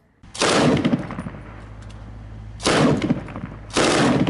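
Three short bursts of automatic gunfire, about a second apart, each with an echoing tail.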